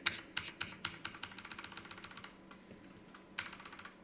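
Computer keyboard keys tapped in a quick run of clicks for about two seconds, then one more tap near the end.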